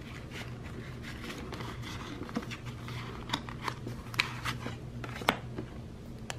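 Paper bills and a clear plastic zipper pouch being handled: soft rustling with a few sharp clicks and ticks, the loudest about five seconds in.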